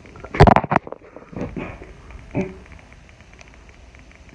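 A quick cluster of loud knocks and thumps about half a second in, followed by low rustling and a brief spoken "yeah".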